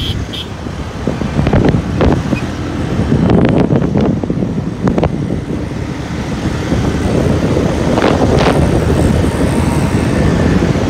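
Motorcycle under way at around 68 km/h: steady engine and road noise with wind rumbling on the microphone, and a few short knocks.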